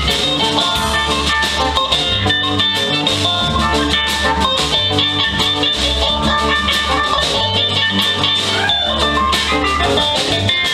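Live band playing an instrumental passage of the song: electric guitar over bass guitar, drum kit and keyboard.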